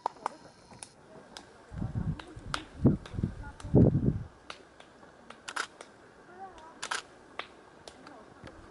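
Handling noise on a handheld camera: scattered sharp clicks and a few low, muffled bumps about two, three and four seconds in.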